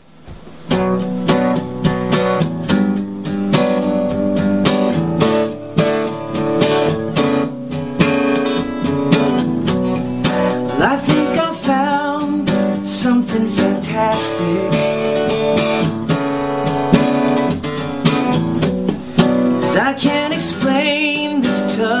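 Gibson acoustic guitar strummed steadily in a song's intro, starting suddenly out of silence. A man's singing voice comes in now and then over it, about halfway and again near the end.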